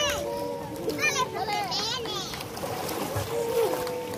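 Young children shrieking and chattering while playing in shallow water, with high-pitched squeals at the start, about a second in and again around two seconds, over light splashing.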